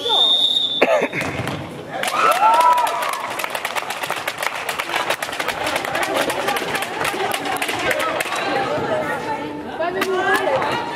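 A referee's whistle gives one short, steady blast, and a sharp knock follows just under a second later. From about two seconds in, spectators in the sports hall clap and cheer, with shouts over the clapping.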